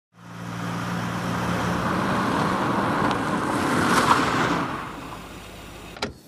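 A car driving up, its engine hum and tyre noise building to a peak about four seconds in, then dying down as it comes to a stop.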